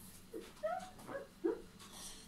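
A boy's short pained whimpers, four in quick succession and muffled against the glass he is drinking from, a reaction to the burning heat of a hot pepper in his mouth.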